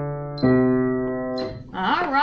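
Upright piano playing the last slow, evenly spaced notes of a two-octave C major scale at about one note a second, each with a metronome click. The final note rings and fades, and a voice begins near the end.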